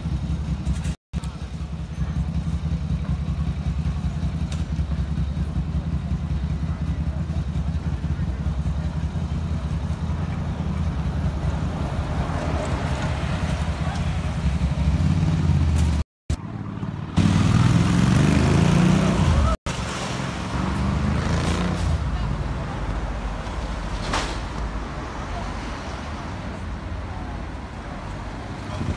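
Busy city street traffic heard through a phone microphone: cars passing under a steady low rumble, with one louder vehicle passing a little past halfway. The audio drops out completely three times, briefly.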